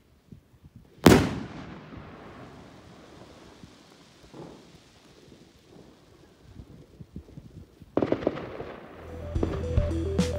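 A Zink 910 200-gram bomb rocket bursts with a single loud bang about a second in, and the echo fades away over several seconds. Near the end comes a quick run of crackles, then music with a beat starts.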